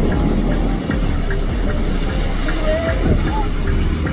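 Small motorboat's Tohatsu outboard motor running steadily as the boat passes close by, with a low rumble throughout.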